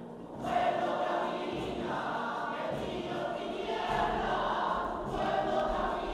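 Choir singing a communion hymn, the voices coming in strongly about half a second in and carrying on.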